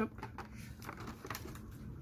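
Faint handling noise: a few light taps and rustles as a small object and cardboard are moved by hand.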